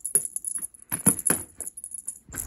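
Cat toy jangling and rattling as it is swept fast around a shag rug during play, with a few sharp knocks about a second in.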